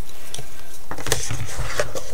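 Small clicks and knocks of a wooden ruler and pens being handled and slipped back into a notebook's elastic tool strap, with a sharper click about a second in and some low rumble of the notebook being handled.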